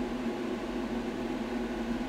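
Steady machine hum with an even hiss underneath, unchanging throughout.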